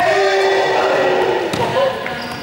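A drawn-out shout from a player, lasting about a second and a half, with a small ball bouncing on the hard gym floor a few times around it.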